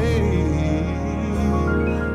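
Contemporary gospel song: a man's solo voice sings a line that wavers up and down in pitch, over backing music with a sustained low bass note.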